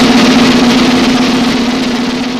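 Cinematic intro sound effect for a logo reveal: a sudden loud hit that settles into a steady low hum with a noisy wash over it, slowly fading.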